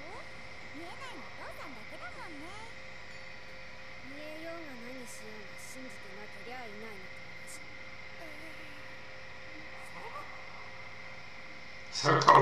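Faint Japanese anime dialogue, voices rising and falling at low level, over a steady hiss and a constant thin electrical whine.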